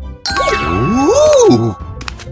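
Cartoon sparkle sound effect: a tinkling shimmer of chimes with a swooping tone that rises and then falls, starting about a quarter second in and stopping just before the end, over background music.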